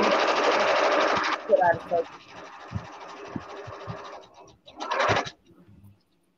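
Sewing machine stitching in a fast, even run, loud for about a second and a half and then fainter for a few seconds more. A short vocal sound comes in the middle.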